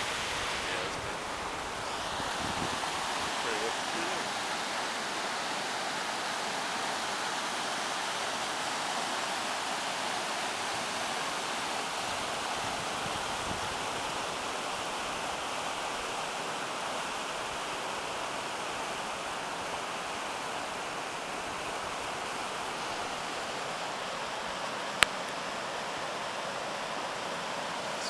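Shallow, rocky river rushing over stones, a steady hiss of white water. A single sharp click sounds near the end.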